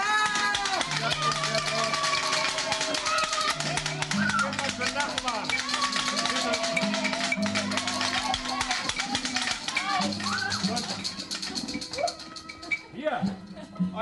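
Noisy New Year's mummers' racket: fast, continuous rattling and shaking over low held notes that step between pitches, with voices shouting and chanting on top. The din dies away about 13 seconds in.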